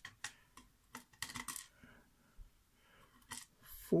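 Scattered light clicks and scrapes of metal tweezers picking up and handling small lock pins on a pin tray, with a cluster of quick ticks about a second in.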